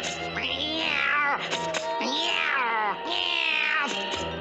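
A cartoon duck's voice caterwauling like a cat on a fence: three or four long yowls, each sliding down in pitch, over orchestral cartoon background music.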